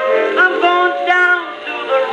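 Edison Diamond Disc phonograph playing a 1921 acoustic jazz-blues record: a band playing, with a male voice singing from about half a second in.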